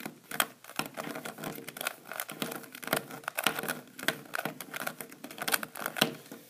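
A 3x3 Rubik's Cube being turned quickly by hand, alternating top-layer and middle-slice turns: a continuous run of irregular plastic clicks and clacks.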